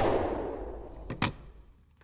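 A pistol shot, its echo dying away over about a second and a half, with a second, quieter sharp crack about a second in.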